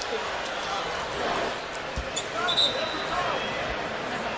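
Arena crowd murmur with faint voices on the court, a few light knocks and a short high squeak about two and a half seconds in.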